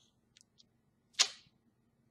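Near silence, broken about a second in by a single short whoosh.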